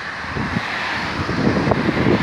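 Wind buffeting the microphone: irregular low rumbling gusts over a steady outdoor hiss.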